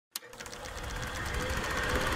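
A click, then a rapid, even mechanical rattle that fades in and grows steadily louder.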